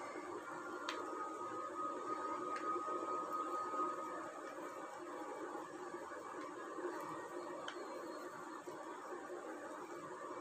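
Quiet room noise with a few faint clicks as a knife cuts soft coconut barfi and its blade touches the bottom of a glass dish. A faint steady high tone sounds for a few seconds near the start.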